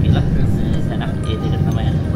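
Steady low rumble of a car's engine and tyres heard inside the moving car's cabin, with voices talking faintly over it.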